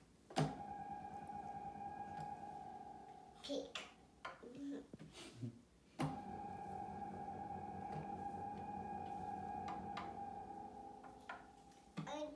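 Moog Grandmother analog synthesizer playing two long held notes. Each starts with a sharp attack, holds at a steady pitch for a few seconds, then fades.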